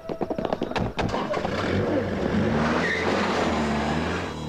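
A few sharp knocks, then a car engine running with tyre noise, its pitch climbing slightly.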